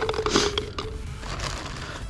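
Plastic parts of a paintball gun's feed being handled while it is loaded with paintballs: several short clicks and scrapes, most of them in the first second.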